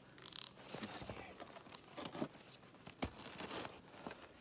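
Faint crunching and scraping on snow, with a single sharp click about three seconds in.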